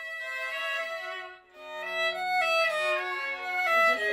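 Bowed violin playing a classical passage in stepwise notes, with the lower strings of a string quartet under it. The music breaks off briefly about a second and a half in, then goes on.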